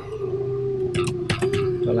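Computer keyboard keystrokes, several short clicks in the second half, over a steady drawn-out tone that drifts slightly in pitch.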